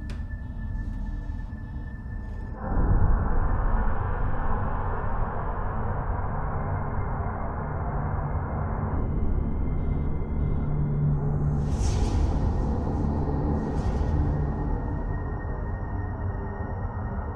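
Ominous sci-fi film score over a deep low rumble that jumps suddenly louder about three seconds in and holds, with two short whooshes near the end.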